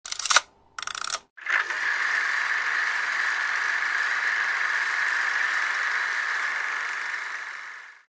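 Old film projector sound effect: two short clacks in the first second, then a steady whirring rattle that fades out near the end.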